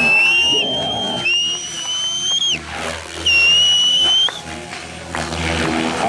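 Radio-controlled 3D helicopter in flight: a high-pitched whine that holds steady or rises slightly, then cuts off abruptly, three times in a row. Spectators' voices run underneath.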